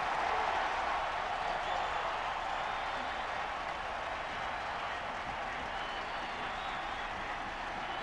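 Football stadium crowd cheering a touchdown: a steady wash of many voices that slowly dies down.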